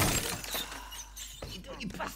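A sudden crash, like something shattering, at the very start, dying away over about half a second, followed by faint voices.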